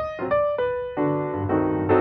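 Piano music playing a steady run of chords that thins to a few single notes about half a second in, then returns to fuller chords.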